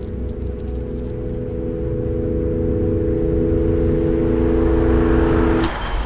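Garage door opener running with a steady motor hum that grows louder, then stopping abruptly with a clunk near the end.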